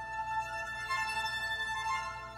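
Electric string quartet playing contemporary classical music, with held high violin notes and a new note entering about a second in.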